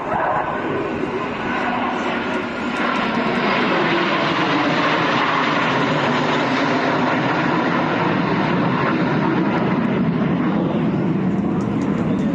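A formation of military jets passing overhead: a loud, steady jet-engine roar that swells about three seconds in and holds, with crowd voices beneath it.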